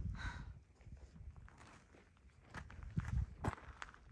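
Footsteps on a dirt-and-gravel path, a quiet, irregular series of low thuds and scuffs.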